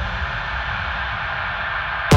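Electronic dance music in a breakdown: a steady, filtered noise wash over a low rumble, with no drum hits.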